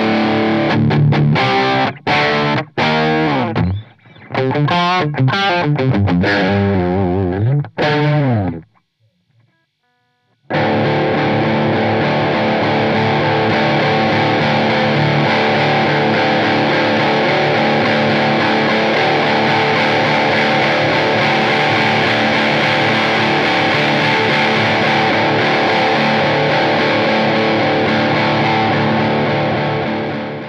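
Electric guitar overdriven by a JHS Morning Glory V4 on its mid-gain setting: a short riff of distorted chords, a pause of about two seconds, then a drop D power chord that rings on steadily while the pedal's tone knob is turned.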